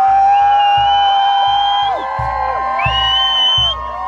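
Bagpipes playing long held notes with slides, over a steady low beat, while a crowd cheers and whoops.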